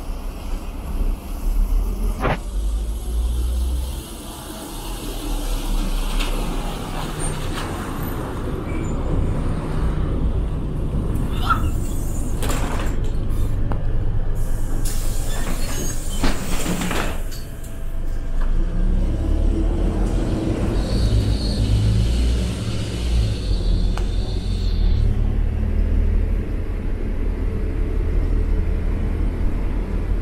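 A LiAZ-4292.60 city bus's diesel engine runs steadily with a low rumble. It is broken by loud hisses of compressed air, a short one about twelve seconds in and a longer one about fifteen to seventeen seconds in.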